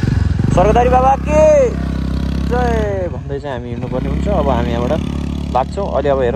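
A person talking over the steady low hum of an idling motorcycle engine.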